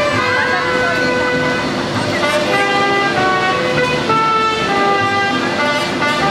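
Mariachi band playing an instrumental passage: trumpets hold long notes that step from pitch to pitch, backed by violins and guitars.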